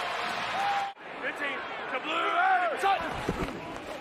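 Football stadium field audio: a steady crowd hum that cuts off abruptly about a second in, then shouting voices over quieter crowd noise.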